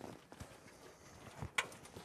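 Faint scattered knocks and scuffs from a person clambering over a wall from a stepladder, with one sharper knock about one and a half seconds in.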